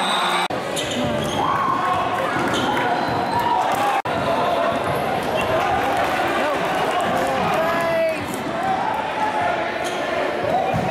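Gymnasium crowd noise during a basketball game: spectators' voices calling out over each other, with a basketball bouncing on the hardwood court. The sound drops out for an instant about half a second in and again about four seconds in.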